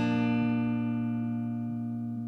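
Closing guitar chord of an indie song, held and slowly fading as the track ends.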